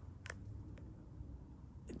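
Quiet room hum with a few faint, short clicks, the clearest about a quarter of a second in.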